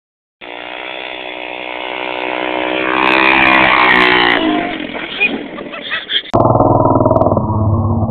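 Four-wheeler (ATV) engine revving up, its pitch rising to a peak three to four seconds in and then falling away. About six seconds in the sound cuts abruptly to the engine running again, closer and more muffled.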